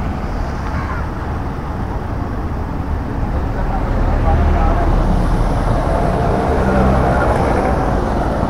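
Steady rumble of road traffic from a busy street, growing louder partway through, with faint voices in the background.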